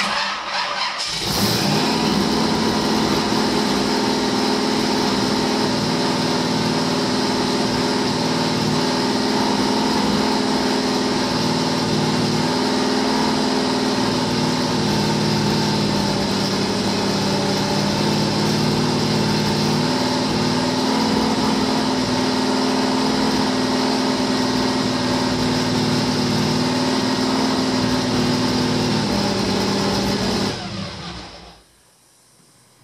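Engine with a newly installed camshaft cranks and catches about a second in, then runs at a steady fast idle, its pitch wavering slightly around the middle. The mixture is running way lean.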